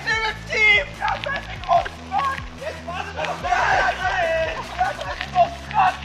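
Several people's voices calling and shouting, the words unclear, over background music with steady low bass notes.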